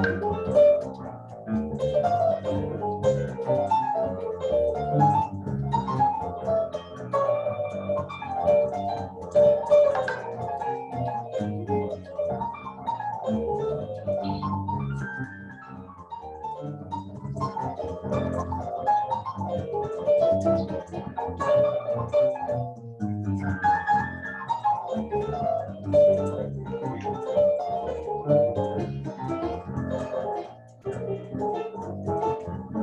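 A jazz number played solo on an electronic keyboard: busy melodic lines over chords, easing off for a moment about halfway through.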